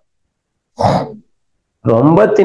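A man clearing his throat once, a short noisy rasp about half a second long, just under a second in.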